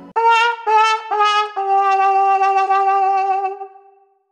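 'Sad trombone' comedy sound effect on muted brass: three short notes stepping down in pitch, then a long held lower note that wavers and fades, the 'wah-wah-wah-waaah' that signals a failure or letdown.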